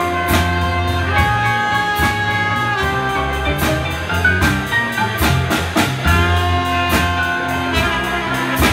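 Live jazz band playing an instrumental passage: trombone, trumpet and clarinet over double bass, drum kit and keyboard, with regular cymbal strikes.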